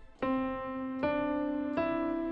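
Keyboard played with a piano sound, chord-melody style: sustained chords with the melody on top, three notes struck about a second and then under a second apart, stepping upward.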